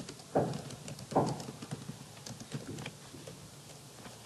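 Typing on a computer keyboard: a run of light key clicks, with two heavier thuds in the first second or so.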